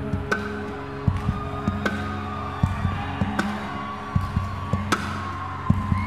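Acoustic guitar played percussively, instrumental with no singing: held notes ring over a steady rhythm of low thumps on the guitar body, with a sharp slap about every second and a half.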